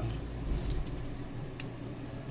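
A few sharp plastic clicks and handling noises as the hinged plastic housing of a DJI Osmo Action action camera is unlatched and opened. The latch is stiff because the housing is new.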